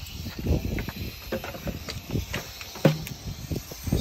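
Rattlesnake rattling, a steady hiss, the snake's warning as it is approached. Irregular low thumps run through it, typical of footsteps and the phone being handled.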